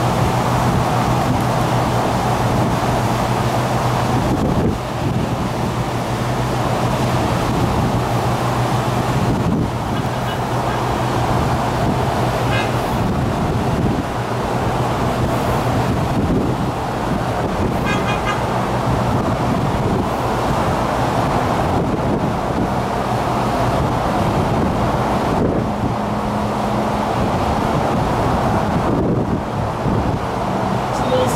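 Steady outdoor noise of road traffic on a causeway below, heard across water, under a low unchanging hum.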